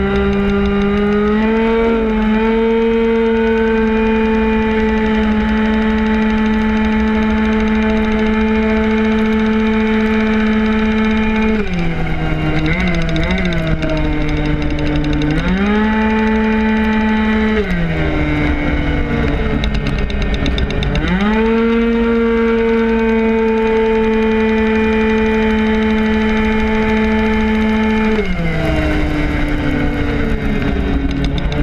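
Tuned 50cc two-stroke racing scooter engine heard onboard at full throttle, holding one steady high pitch on the straights. The pitch drops away when the rider lets off about twelve seconds in, again around eighteen seconds and near the end, and climbs back each time. Wind rumble on the microphone runs underneath.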